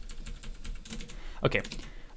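Computer keyboard typing: a run of light keystroke clicks as a line of code is edited.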